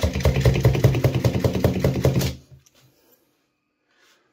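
Vacuum pump drawing the air out of a glass jar through its vacuum lid: a fast rhythmic pumping noise for about two seconds, then it stops.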